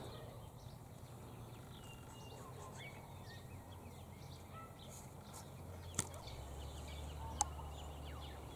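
Faint, scattered bird chirps and short whistles over a quiet outdoor background, with a single sharp click about six seconds in.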